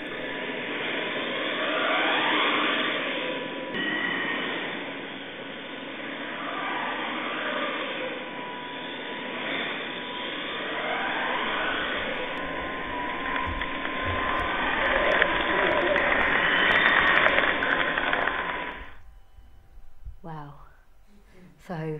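Steady, dull machinery noise with whines that slide up and down, from the hydraulic motion gimbal (four roll cylinders and two pitch cylinders) rocking a full-size ship set on a soundstage. The sound cuts off suddenly near the end.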